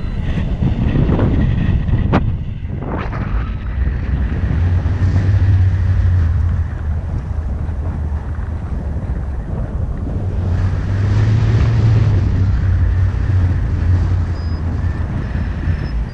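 Wind buffeting the camera microphone in paragliding flight: a loud, low rush of air that swells twice, with a sharp click about two seconds in.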